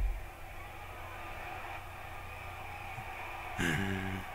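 Faint, muffled wrestling broadcast playing in a small room over a low steady hum, with a brief thump at the very start. A man makes a short voiced sound near the end.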